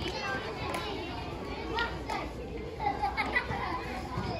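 Children's voices shouting and calling out on a football pitch, heard as scattered short shouts over open-air background noise.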